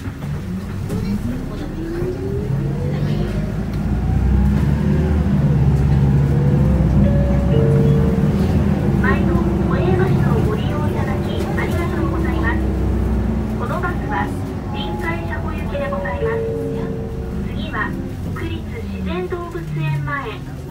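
Interior sound of an Isuzu Erga city bus's diesel engine accelerating hard, with a whine that rises steadily in pitch over the first few seconds. The engine is loudest through the middle and eases off towards the end.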